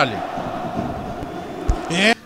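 Steady background noise with a faint steady hum, and a single low thump near the end; a man's voice briefly at the start and again at the very end.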